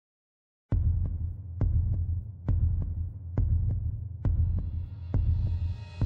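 A deep, throbbing double-beat pulse like a heartbeat, with a click on each stroke, starts just under a second in and repeats about once a second. A high, rising shimmer swells in over the second half, as in a cinematic intro soundtrack.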